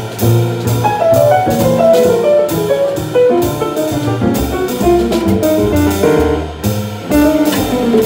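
Live jazz trio: a grand piano playing quick runs of notes over a walking double bass line, with a regular high ticking keeping time, in a jazz piece drawing on Armenian folk melody.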